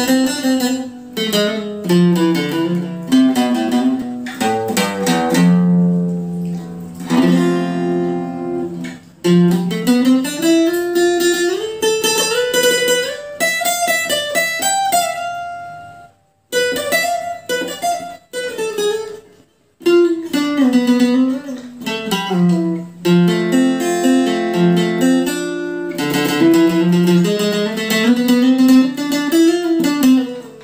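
Givson hollow-body acoustic guitar with f-holes playing a plucked melody in A minor: runs of single notes rising and falling over held bass notes. The playing stops briefly twice about halfway through.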